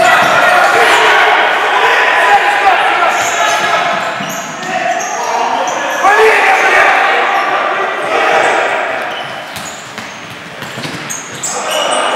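Indoor futsal play on a wooden court: the ball being kicked and bouncing, and players' shoes squeaking on the parquet, with voices shouting in the echoing hall.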